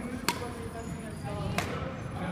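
Two sharp knocks, one about a quarter-second in and a second about a second later, over faint background voices in a gym hall.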